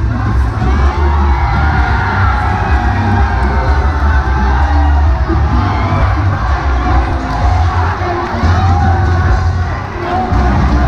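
A crowd of young costumed dancers cheering and shouting together, over bass-heavy music from the sound system.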